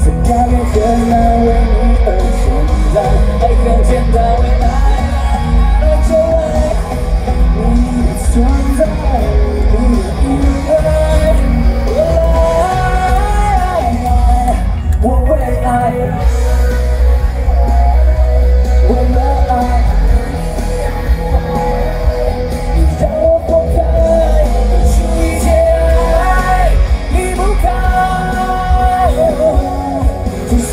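Live pop-rock concert sound through a PA: a male vocalist singing over a full band with heavy, steady bass, loud and continuous.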